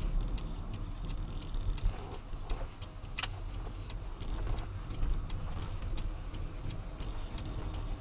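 Car turn signal ticking steadily, about three ticks a second, while the car turns right, over low engine and road noise.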